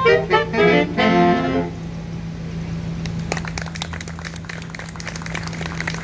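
Saxophone quartet playing the last short, detached chords of a tune, which stop about a second and a half in. About a second later, scattered applause starts and carries on, over a steady low hum.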